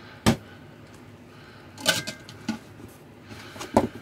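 Sharp clicks and knocks of things being handled in a cardboard box of cloth napkins, glassware and a plastic bottle: one knock just after the start, a small cluster about halfway, and two more near the end, with soft rustling between.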